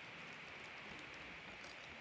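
Faint steady hiss of room tone, with no distinct sound in it.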